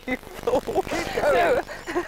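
A man and a woman laughing, in wavering, high voices.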